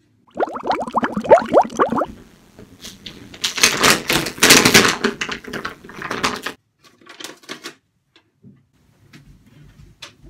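Manual toothbrush scrubbing teeth in quick, scratchy strokes, densest a few seconds in, then trailing off into a few separate strokes. It is preceded by a short run of quick squeaky rising sounds.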